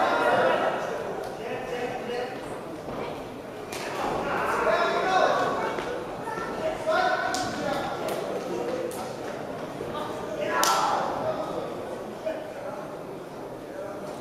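Shouting voices echoing in a large sports hall during a boxing bout, with a few sharp smacks from the action in the ring, the loudest about ten and a half seconds in.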